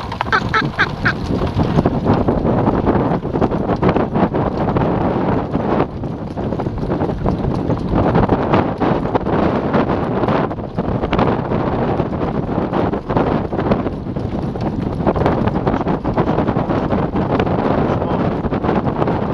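Horse-drawn training cart moving at speed: wind buffeting the microphone over the rattle and knocking of the cart and the horse's hooves on a dirt track. A short run of squeaky calls comes about a second in.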